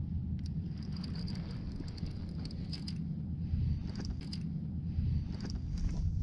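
Steady low rumble of wind and water on the microphone, with scattered light clicks and ticks from a fishing reel being worked while a fish pulls on the line.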